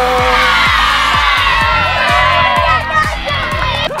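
A group of children cheering and shouting together over background music with a steady beat; the shouting thins out near the end.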